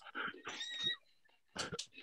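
A person's quiet, breathy laughter, ending in two short sharp breaths near the end.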